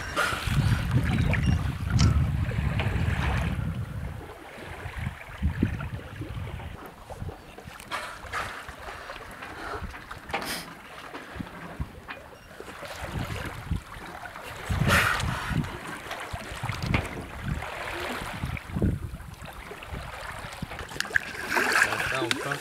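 Sea water rushing and splashing along a moving sailboat's hull, with wind buffeting the microphone, heaviest in the first few seconds. Short splashes come and go after that, one of the loudest near the middle.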